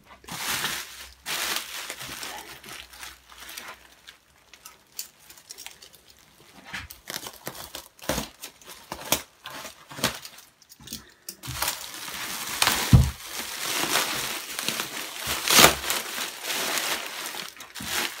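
Bubble wrap and plastic bag packaging crinkling and rustling as it is pulled apart and away by hand, with irregular crackles that get busier and louder in the second half.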